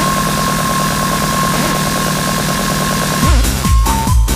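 Hard trance music in a breakdown: a sustained buzzing bass and a steady high synth tone with no kick drum, until a heavy kick drum comes back in about three seconds in.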